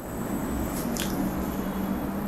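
Quiet room tone with a steady low hum and a faint click about a second in.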